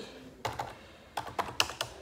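Typing on a computer keyboard: a couple of keystrokes about half a second in, then a quick run of key clicks in the second half.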